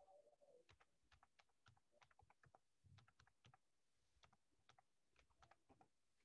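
Faint typing on a computer keyboard: irregular key clicks in quick runs with brief pauses.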